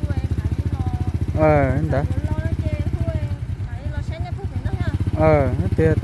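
Small underbone motorcycle engine idling with a steady, even putter. A voice speaks briefly twice over it.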